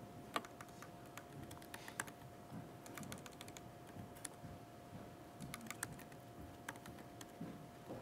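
Faint, irregular keystrokes of typing on a computer keyboard, over a thin steady hum.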